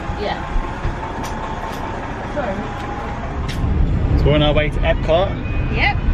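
Car cabin noise on the move, a low steady rumble, with voices talking over it from about four seconds in. Before that, quieter ambience beside the car with faint voices and a few light knocks.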